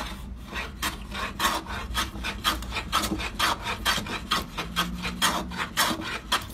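Hand plane with a freshly sharpened blade taking short, quick strokes across the top of a wooden block against the grain, about four strokes a second. It cuts smoothly, the sign that the blade is sharp.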